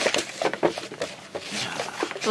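Cup-noodle packaging being peeled open and handled: plastic wrap and lid crinkling and tearing in short, irregular crackles.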